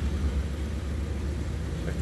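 Tow truck's engine idling, a steady low rumble.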